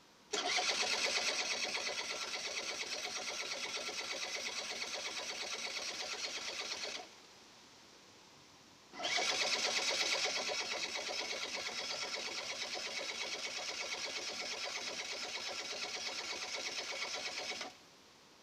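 Honda Dio AF27 50cc two-stroke scooter being cranked on its electric starter in two long attempts, about seven and nine seconds each, with a short pause between. The engine is turned over at a steady speed and does not catch, and each attempt stops abruptly. It is cranked just after refuelling, when the fuel may not yet have been drawn up to the carburettor.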